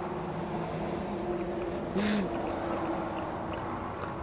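A husky lapping water from a portable drinking-bottle bowl, faint wet laps over a steady low motor hum. A brief short pitched sound comes about halfway through.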